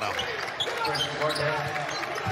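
Live basketball court sound: a ball dribbling on the hardwood with short squeaks and knocks from play, and players' voices calling out as a player drives to the basket and scores.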